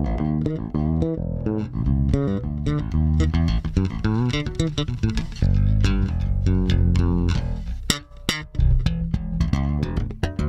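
Sire V7 Vintage five-string fretless electric bass being played, a run of plucked notes, some sliding in pitch.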